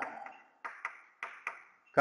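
Chalk writing on a chalkboard: about five short scratching strokes in quick succession in the second half.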